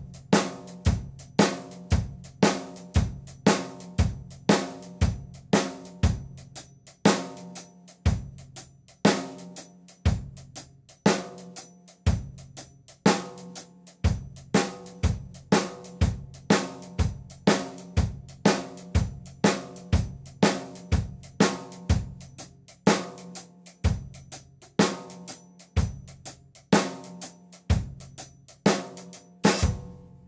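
Drum kit playing a shuffle groove: the cymbal pattern stays steady while the bass drum and snare switch every four bars between regular time and halftime, with no ghost notes. It stops on a final loud hit near the end.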